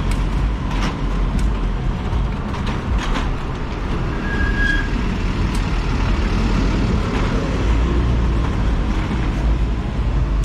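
Wind rumble on the rider's microphone over city traffic noise from trucks and cars during a slow motorcycle ride, with a few light clicks. A brief high-pitched tone sounds about halfway through.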